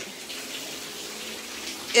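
Water pouring steadily from the ceiling, an even rushing hiss: the leak from a burst water pipe in the apartment upstairs.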